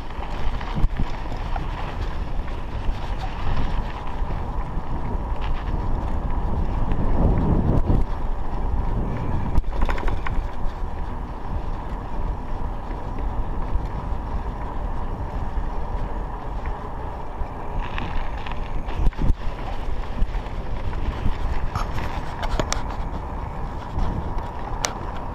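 Riding a Raleigh MXR DS 29er mountain bike on a tarmac road, with wind buffeting the chest-mounted action camera's microphone in uneven gusts over the rolling of the tyres. A few sharp clicks come near the end.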